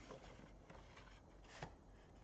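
Faint rubbing and scraping of a cardboard headphone box as the black inner box is slid up out of its red outer box, with one short, sharper scrape about one and a half seconds in.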